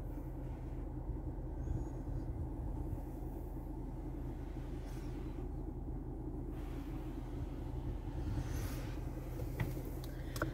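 Steady low hum of a 2014 Jeep Cherokee's engine idling, heard from inside the cabin.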